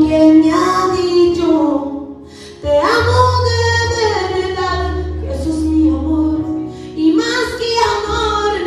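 A woman singing a Christian worship song through a microphone and PA loudspeakers, over instrumental accompaniment. She sings in long held phrases, breaking off briefly about two seconds in before the next phrase.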